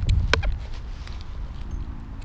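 Wind and handling rumble on a camera microphone, with a few sharp clicks in the first half second.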